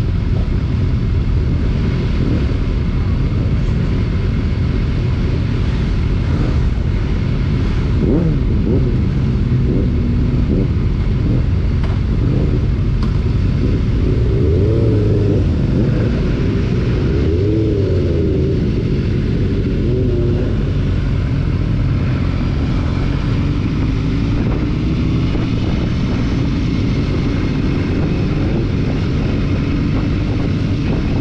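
Motorcycle engines idling and moving off at walking pace in a queue of bikes, the nearest being a BMW S1000XR's inline-four. A steady rumble throughout, with engine notes rising and falling in pitch now and then, most clearly about halfway through.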